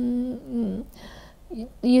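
A woman's drawn-out hesitation sound, a hum held on one steady pitch, ending about half a second in with a short falling vocal sound; after a pause she starts speaking again near the end.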